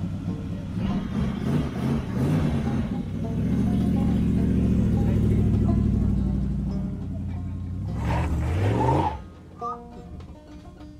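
Rat rod's exposed engine revving as the open car pulls away: uneven revs at first, then a steady loud pull, then revving up again near the end. The sound cuts off suddenly about nine seconds in, and quieter plucked music follows.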